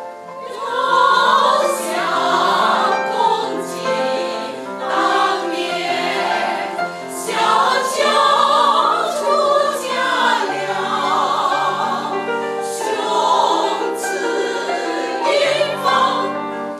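Mixed choir of men's and women's voices singing a Chinese choral piece in full harmony, with sustained notes that waver in vibrato.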